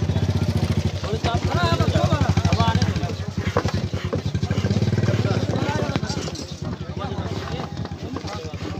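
A small petrol engine running at a steady idle with an even, rapid beat, fading somewhat near the end, under the voices of a crowd.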